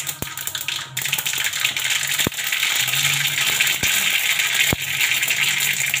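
Vegetables sizzling in a steel kadhai, a dense steady hiss, with a metal spatula knocking against the pan about four times.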